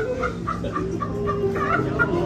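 High-pitched giggling in a quick run of short laughs, about five a second, over a sustained chord of background worship music.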